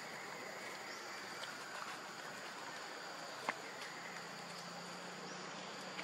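Steady high-pitched drone of forest insects, with a single sharp click a little past the middle.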